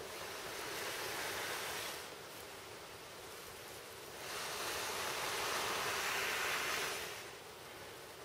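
Long, steady breaths blown into a tinder bundle of dry grass, leaves and birch bark to fan a fire-roll coal into flame: two long blows, the second starting about four seconds in.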